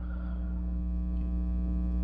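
Steady electrical mains hum with a stack of evenly spaced overtones, unchanging throughout.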